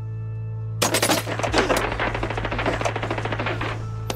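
A low sustained music drone, then about a second in a sudden dense burst of rapid machine-gun fire lasting about three seconds, laid into the music track as a sound effect.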